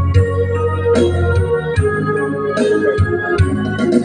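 Instrumental intro of a karaoke backing track led by an electronic organ-style keyboard, with sustained chords over a steady bass that change about once a second.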